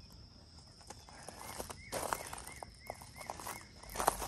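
A bird chirping: a quick run of short calls, about four a second, starting about a second in, over a faint steady high-pitched tone.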